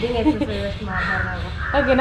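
Two women chatting and laughing, with a harsh bird call about a second in and again near the end.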